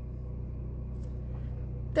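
A steady low hum, with a faint click about halfway through.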